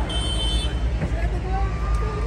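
Low, steady engine note of a passing parade tractor, with crowd chatter around it; a high, steady whistle-like tone sounds for about the first half second.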